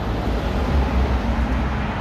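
Steady outdoor background noise: a low, uneven rumble with a hiss over it.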